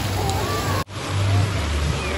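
Wave pool water rushing and splashing, with scattered distant voices of swimmers over a low rumble; the sound briefly cuts out just under a second in.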